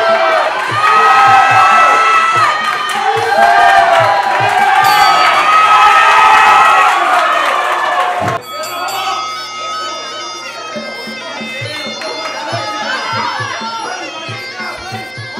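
Muay Thai sarama fight music: a shrill, reedy Thai oboe (pi) melody over steady drum beats, with a crowd shouting and cheering. The loud music cuts off abruptly about eight seconds in and carries on noticeably quieter.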